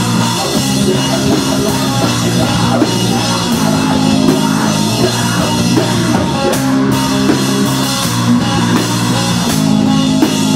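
Rock band playing a song, a full drum kit with cymbals driving it at a steady loud level.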